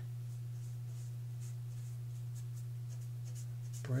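Paintbrush working stiff acrylic paint on a painting panel, a few faint scratchy strokes over a steady low hum.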